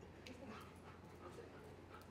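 Near silence on a hard floor, broken only by a few faint light taps and small sounds from a German Shepherd police dog as it starts off on its search with its handler.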